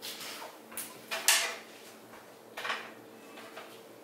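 A wooden spindle-back chair being shifted and turned on the floor: a few short scuffs and knocks, the loudest a little over a second in and another near three seconds.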